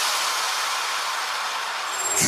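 White-noise wash from an electronic dance track's breakdown: a steady hiss with the bass and kick cut out, easing slightly in level.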